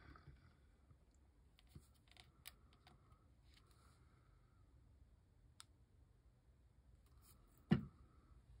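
Hands working paper craft pieces on a tabletop: faint scattered clicks and short paper rustles, then one sharp knock near the end as something is set down or pressed on the table.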